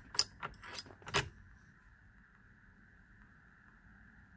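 About four light metallic clicks and clinks in the first second or so, as the shell-plate wrench and the 6061 aluminium locking dowel are handled on the steel shell plate of a Hornady Lock-N-Load AP progressive reloading press. Then only a faint steady high hum.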